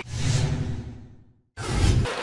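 A broadcast transition whoosh with a low boom, fading out over about a second and a half. After a brief silent gap, the game's arena sound cuts in abruptly near the end.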